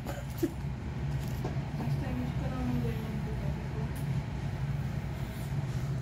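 A steady low hum, like a running motor or engine, with faint voices in the background.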